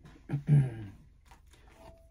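A man's brief wordless vocal sound, a murmur or throat noise, about a third of a second in, then faint clicks and rustle of tarot cards being gathered up from the table.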